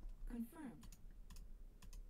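Computer clicks: several sharp clicks in close pairs, about a second in and again near the end, following a brief falling vocal sound at the start.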